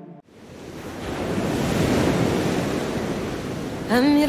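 A swell of rushing, surf-like noise with no pitch or beat. It fades in over about two seconds, holds steady, then cuts off suddenly near the end as a song begins.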